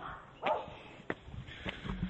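Footsteps on a dirt trail, a series of sharp steps, with a short call about half a second in that is the loudest sound.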